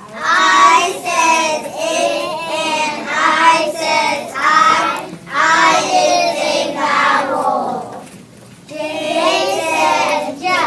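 A group of kindergarten children singing together in phrases, with a brief pause about eight seconds in.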